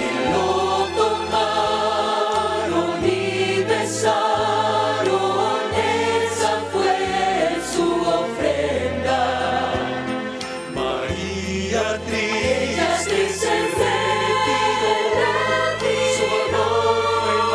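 Choir singing a sacred cantata over instrumental accompaniment, with a bass line of held notes that change every second or two.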